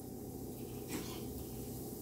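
Urad dal and chana dal frying quietly in hot oil in a pan: a faint, steady sizzle over a low hum.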